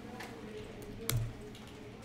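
A few computer keyboard keystrokes as a new value is typed in, with one sharp, louder key click about a second in.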